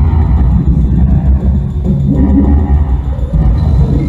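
Live electronic noise music from synthesizers and a drum machine, loud and dense, with most of its weight in the deep bass.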